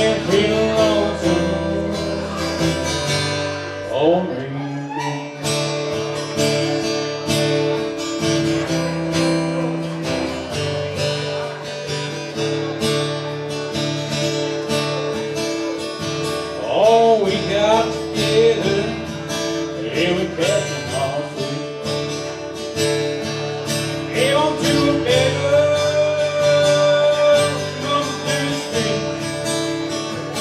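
Live solo acoustic guitar, strummed steadily, with a man singing over it in stretches.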